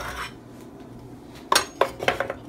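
A nonstick muffin pan of cupcake batter being set into a George Foreman Evolve grill's baking plate, with two sharp metal clanks about a second and a half in.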